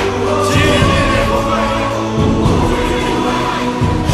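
A large group of voices chanting a slogan in unison, phrase after phrase, with music behind them.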